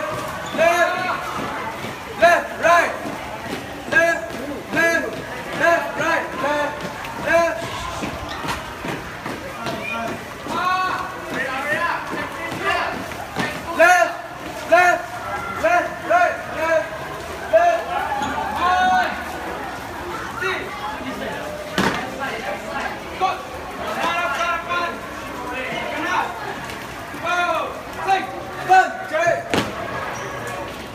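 Shouted drill calls from a marching squad of police cadets, short voice calls repeating about once a second, with a few sharp boot stamps in the second half.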